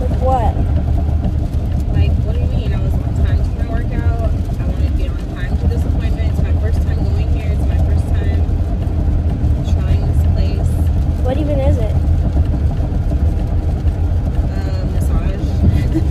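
Road noise inside a moving car's cabin: a steady low rumble, with faint voices now and then.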